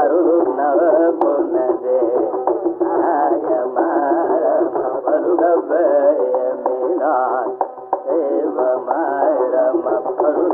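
Carnatic concert music in raga Poornachandrika: a continuous melodic line with fast, wavering pitch ornaments, on an old recording with no deep bass or bright treble. There is a brief click about a second in.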